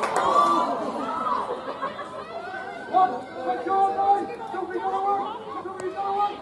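Several people's voices chattering at once on a rugby pitch, overlapping and with no clear words, and a single sharp click near the end.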